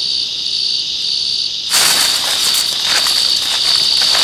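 Steady, high-pitched insect chorus, like crickets, pulsing gently. About two seconds in, a dry rustling, scratchy noise joins it.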